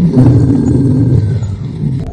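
A lion's deep, loud roar, lasting nearly the whole two seconds and fading out near the end.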